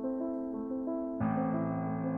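Soft background piano music: a slow, repeating figure of held notes, with a deeper, fuller chord coming in just over a second in.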